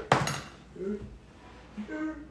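One sharp clatter of a metal fork set down on a hard kitchen countertop, with a brief ring after it, followed by a couple of short murmured voice sounds.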